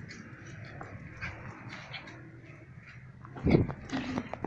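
Small Yorkshire terrier making faint whimpering noises, then a short, loud burst of sound about three and a half seconds in, followed by a few sharp clicks.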